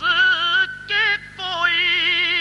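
A man's solo voice singing a line of Urdu devotional verse, held notes with wavering, ornamented pitch in three phrases broken by brief pauses. A steady low hum runs underneath.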